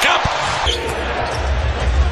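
Basketball arena sound: crowd noise with a few sharp thumps as a layup goes in, then, from under a second in, a basketball being dribbled on the hardwood court, a run of low thumps.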